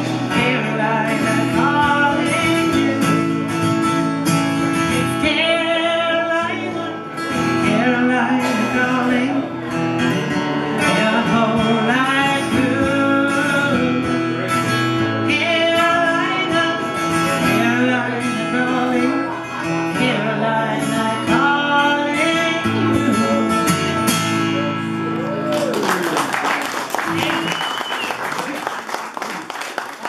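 A woman singing with acoustic guitar accompaniment, performed live. The song ends about 25 seconds in and the audience applauds.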